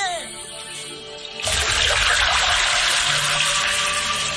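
A sudden, loud rush of churning, splashing water in a pool about a second and a half in, continuing steadily over held music notes.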